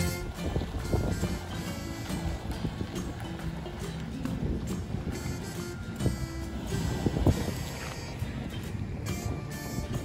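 Background music at a moderate level.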